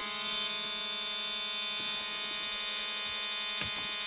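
Steady electrical buzz made of many held tones, coming through newly installed car speakers as an aftermarket head unit powers up, with a couple of faint clicks.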